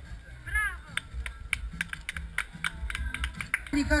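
Scattered hand claps from a small audience: many short, sharp claps at an uneven pace, stopping shortly before the end.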